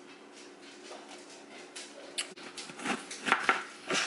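Chef's knife cutting the rind off a fresh pineapple, a series of short crunching cuts that get louder in the last second and a half.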